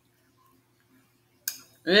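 Near silence with a faint steady low hum (room tone), broken by one sharp click about one and a half seconds in. A woman's voice starts at the very end.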